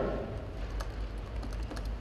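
Quiet, irregular keystrokes on a computer keyboard as a short line of code is typed.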